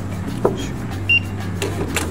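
Hotel room door's electronic keycard lock being opened: a single short beep a little after one second, with light clicks before and after it, over a steady low hum.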